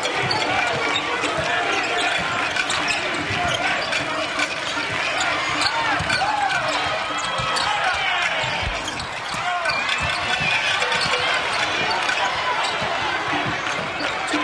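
Live basketball game sound in a large arena: a steady buzz of crowd voices, a ball bouncing on the hardwood court, and many short sneaker squeaks.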